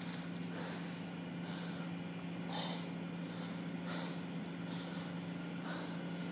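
A steady low hum throughout, with a few faint brief rustles.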